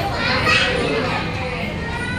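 Indistinct chatter of several voices talking over one another, with no clear words.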